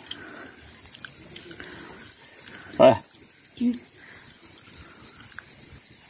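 Steady, high-pitched chirring of insects in the background, with two short voice sounds from a man about three seconds in.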